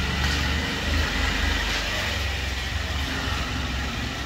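Small umbrella stroller's plastic wheels rolling over a concrete floor, a steady rattling rumble.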